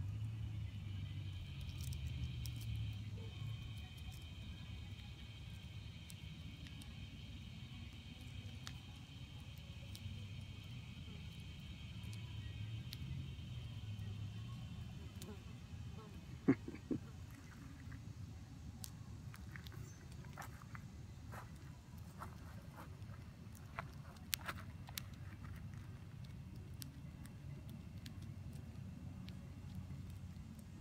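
Faint outdoor ambience: a steady high-pitched drone of distant cicadas that fades out about halfway, over a low rumble on the microphone, with a few sharp clicks in the second half.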